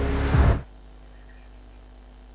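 A short burst of rushing noise, under a second long, at the start. After it only a faint low hum remains.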